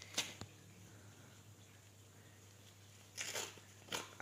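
A padded kraft-paper shipping envelope torn open by hand: a short rip just after the start and another a little after three seconds in, with faint paper rustling between.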